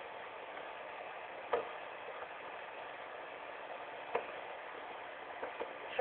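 Two light taps of a homemade squeeze-bottle paint marker's tip against a plastic tub, about a second and a half in and again about four seconds in, over a steady hiss.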